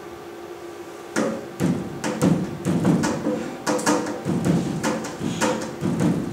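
A rhythm beaten out by hand on a hard surface, like a tala: sharp strokes of differing sound, about three or four a second at uneven spacing, starting about a second in.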